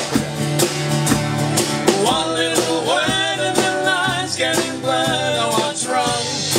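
Live acoustic guitar strummed and sung to, with a steady beat of about two strikes a second under it; a wavering sung line comes in about two seconds in.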